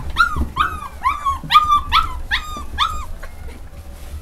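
English Cocker Spaniel puppy giving a run of short, high-pitched yips, about three a second, that stops a little after three seconds in.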